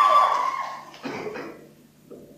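A held, high-pitched cheer from young voices, two pitches together, fading out within the first second. A short weaker call follows, then it falls almost quiet.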